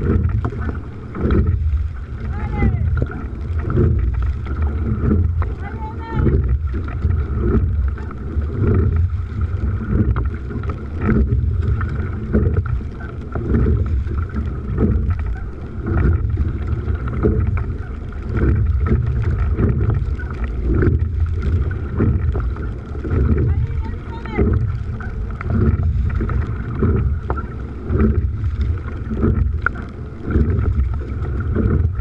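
Coastal rowing boat under way at race pace: oars catching and pulling through choppy water in a steady rhythm, about one stroke every one and a half to two seconds, with water rushing and splashing along the hull and wind buffeting the microphone.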